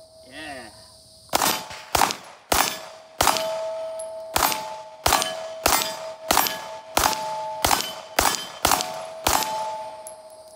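Beretta 92A1 9mm pistol fired about a dozen times at a steady pace, roughly a shot every half-second to second, starting a little over a second in. Hanging steel target plates ring between the shots when hit.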